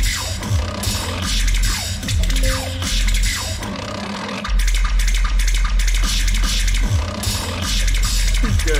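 Loopstation beatbox music: a looped, beatboxed bass beat with scratch effects sweeping up and down over it. About halfway through, the bass drops out for a second, then the full beat comes back in.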